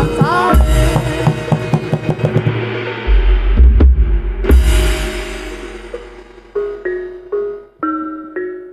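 Live Javanese gamelan accompanying a jaranan horse dance: drumming under a sung, gliding vocal line at first, two sharp cracks with ringing around the middle, then slow single ringing notes struck on metallophones as the music thins out near the end.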